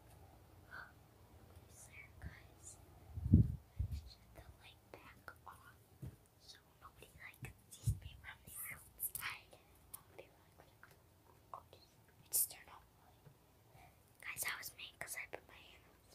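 A child whispering in short bursts. About three seconds in there is a loud thump.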